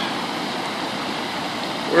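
Flooded creek of muddy water rushing over a gravel driveway, a steady even rush.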